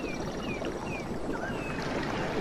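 Steady rushing of flowing water, with a few short high chirps sliding downward, like small birds calling over a stream.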